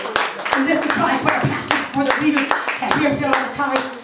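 Hands clapping in a steady rhythm, about two and a half claps a second, with voices going on over the clapping.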